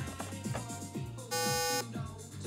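A Simon electronic memory game sounds one buzzy electronic tone for about half a second, beginning a little past the middle. Background music with a steady beat plays throughout.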